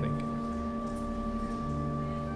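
Soft organ music holding a sustained chord of pure, steady tones, moving to a new chord about one and a half seconds in.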